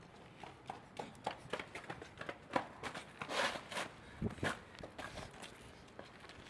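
Running footsteps on brick pavement: a string of quick, uneven steps, with a brief scuff a little past the middle and two dull thumps soon after.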